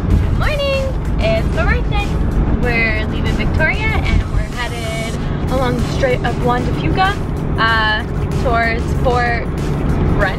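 Steady low rumble of a camper van driving on the road, heard from inside the cabin, under a woman's talking.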